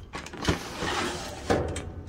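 A sliding part of a Producer's Pride five-deck brooder being handled: a knock, a scraping slide for about a second, then a second knock.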